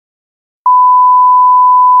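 Silence, then about two-thirds of a second in a loud, steady 1 kHz sine test tone starts and holds. It is the reference tone that plays with SMPTE colour bars.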